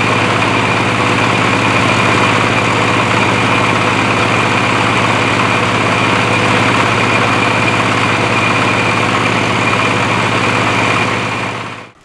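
Silage baler-wrapper running steadily, driven by its engine while the wrapper turns the bale in stretch film: a constant mechanical hum with a steady whine above it. The sound fades out near the end.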